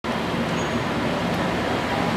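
Steady road traffic noise, with a faint low engine hum running under it.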